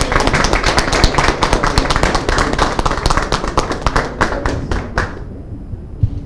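A group of people applauding with many overlapping claps, which die away about five seconds in.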